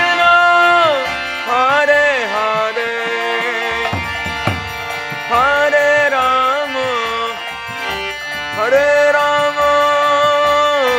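A lead singer chanting a kirtan melody in long held phrases that fall away at their ends, over a harmonium and a mridanga drum.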